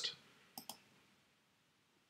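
Two faint computer mouse clicks in quick succession about half a second in, with near silence otherwise.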